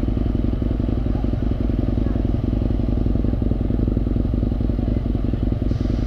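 Husqvarna Nuda 900R's parallel-twin engine idling steadily while the bike stands still.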